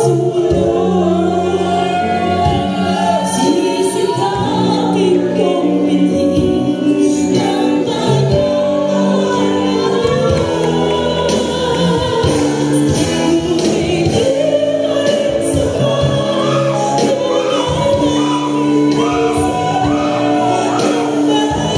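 A mixed church choir singing a slow, solemn worship song through microphones, over sustained accompaniment chords that change every few seconds.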